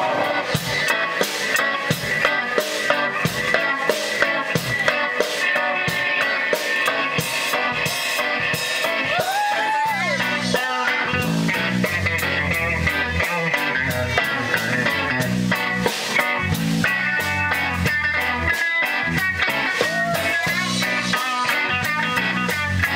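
Live rock band playing an instrumental jam: electric guitar with pitch bends and slides over a drum kit and electric bass. The low end turns much heavier about ten seconds in as the bass plays out strongly.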